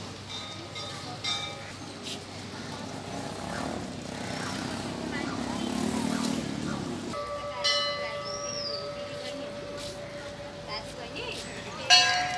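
Hindu temple bell struck about two-thirds of the way through, its tone ringing on steadily for about four seconds, then struck again at the very end, with a higher ring. Indistinct voices of a crowd of worshippers murmur throughout.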